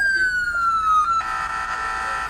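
Smartphone anti-theft app's motion-detection alarm going off through the phone's speaker, set off by the phone being picked up: a siren tone falling in pitch, which about a second in switches to a steady, harsh multi-tone blare.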